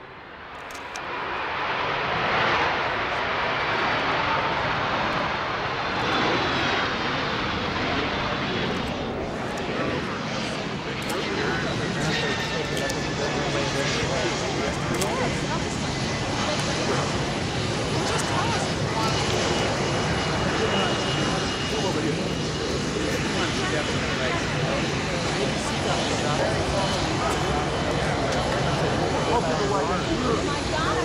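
Twin turbofan jet engines of an Air Force C-20 (Gulfstream III) rolling along the runway after landing. They swell to a loud steady rush within the first two seconds, with a high turbine whine that sinks slightly in pitch and then holds.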